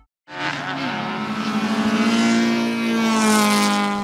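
Honda four-cylinder race car engine pulling hard at high revs under acceleration. It cuts in suddenly, then grows louder with its pitch climbing gradually.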